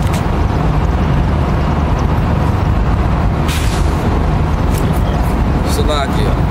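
Low, steady rumble of street traffic, with a short hiss of air brakes about three and a half seconds in.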